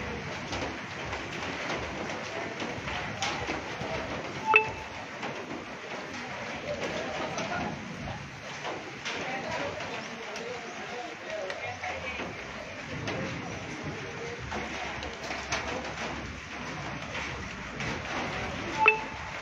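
Heavy rain with hail falling on corrugated metal roofs: a steady wash of noise scattered with sharp ticks of hailstones striking the sheet metal. A brief high tone sounds about four and a half seconds in, and voices can be heard faintly in the background.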